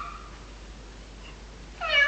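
Cat meowing: one meow trails off at the start, and after a pause another begins near the end.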